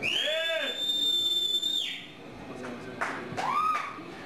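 Audience cheering after a live song, with a shrill whistle held for nearly two seconds over a shout. A second rising whoop follows near the end.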